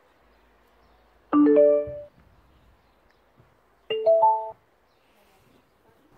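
Electronic prompt chimes from the HF69B Bluetooth amplifier board played through the speaker's two woofers: a short chime about a second in, then a rising three-note chime about four seconds in. These are the board's power-on and Bluetooth prompts as the speaker is switched on.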